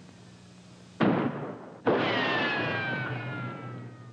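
Film sound effect of popovers exploding in a kitchen and setting it on fire: a sudden bang about a second in, then a second blast with a long falling tone that slowly fades.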